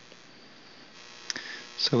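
Faint steady electrical hum in a pause between spoken words, with one soft click about a second and a half in; a man's voice starts at the very end.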